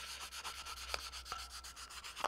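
Fine sandpaper rubbed by hand over the painted steel motorcycle frame in quick back-and-forth strokes: a light sanding that knocks down rough patches in the white paint before it is resprayed.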